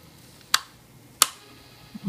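Two short, sharp clicks about 0.7 s apart as hands turn the clear plastic display base under a plastic model kit.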